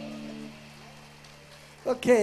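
The last chord of a live rock band's song, electric guitars ringing through their amplifiers, fades out within the first half second. A loud voice over the PA breaks in just before the end.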